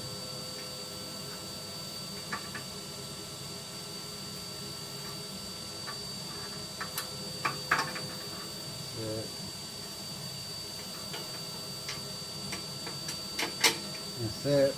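Intermittent metal clinks and knocks as the firebox parts of a multi-fuel wood-burning stove are fitted back into place by hand, over a steady hiss from a running vacuum cleaner.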